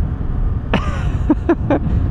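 Riding noise from a Honda Grom's small single-cylinder engine and wind as a low, steady rumble. Short bursts of laughter from the rider start about a second in.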